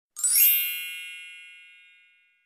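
A single bright chime, a sound effect with a quick upward shimmer that rings on and fades out over about two seconds.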